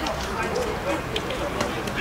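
Live sound from an outdoor football pitch: faint voices of players calling across the field, with a few short knocks over a steady low background hum.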